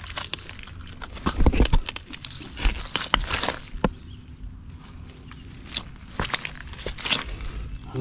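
Rubber boots stepping over rocks and debris on a muddy riverbank: irregular crunches and knocks, the loudest a second or two in.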